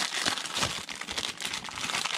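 Thin clear plastic packaging bag crinkling irregularly as it is handled and pulled off a silicone pour-over coffee dripper.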